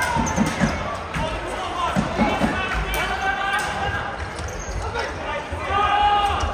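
A futsal ball being played on a hard indoor court: several dull knocks as it is kicked and bounces off the floor, amid players' and spectators' voices in the hall.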